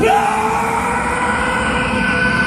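Hurricane simulator booth's blower at full blast: loud, steady rushing wind, with a long held yell from the man inside sounding over it.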